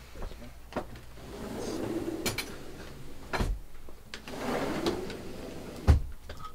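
Equipment handling: a few knocks and clunks with rustling between them, the loudest a low thump near the end.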